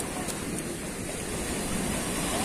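Sea surf washing up the beach, a steady rush of waves, with wind buffeting the microphone.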